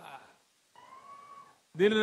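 A man's amplified speech to a rally breaks off for a pause and resumes near the end. In the gap, a short, faint, high-pitched call sounds for under a second.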